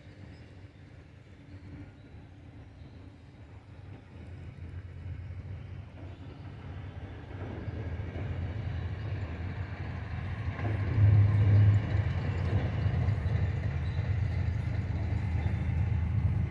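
Diesel locomotives of an approaching freight train, a low rumble that grows steadily louder as the train draws nearer, with a brief louder low surge about eleven seconds in.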